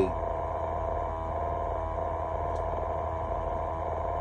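Steady mechanical hum inside a truck's sleeper cab: a low drone with a couple of steady higher tones over it.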